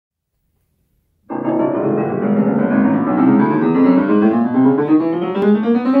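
Kimball Consolette upright piano being played. It starts about a second in with a full chord, then runs steadily up the keyboard in rising notes.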